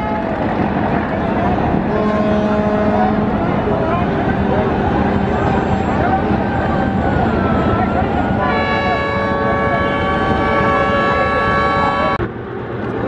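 River boat engines running loudly with water rushing past the hull. A short pitched tone sounds about two seconds in, and a ship's horn blows one long note through the last few seconds.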